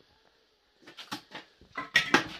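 A quick run of short scrapes and taps from hand tools on laid bricks and fresh mortar, starting about a second in and growing louder near the end.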